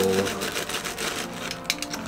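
Scissors cutting open a plastic mailer package: a run of short snips and crackles, densest near the end.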